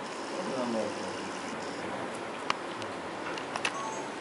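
Faint, indistinct voices murmuring in a room over steady background noise, with a few short sharp clicks about two and a half and three and a half seconds in.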